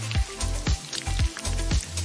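Water running steadily from a bath tap into a bathtub, with background music and its low beat underneath.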